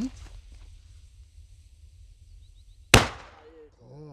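Black-powder Kanonschlag firecracker (about 6 g) going off: a faint hiss of the burning fuse, then a single sharp, loud bang about three seconds in with a short tail.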